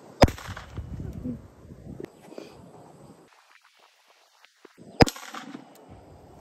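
Two rifle shots about five seconds apart, one from each shooter, fired at a steel spinner target; both shots hit. Each shot is a single sharp crack with a short echo.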